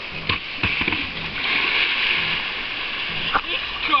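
A kayak sliding down a wooden riverbank launch slide and splashing into the river. A few hull knocks come first, then a rush of splashing water about a second and a half in that lasts a second or so.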